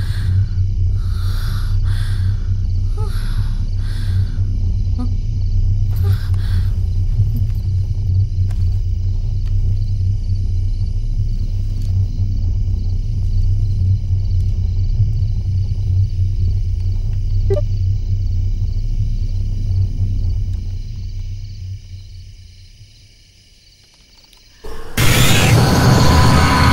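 Horror film score: a loud, steady low rumbling drone with thin sustained high tones above it. It fades away about 21 s in, and a sudden loud stinger crashes in about 25 s in.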